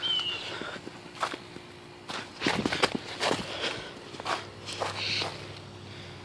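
Footsteps on fallen leaves lightly covered in snow, about eight steps at an unhurried walking pace.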